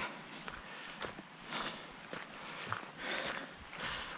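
Footsteps crunching on a gravel path at a steady walking pace.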